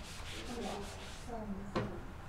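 Felt eraser rubbing across a whiteboard, fading out after about a second and a half, followed by a single sharp knock near the end.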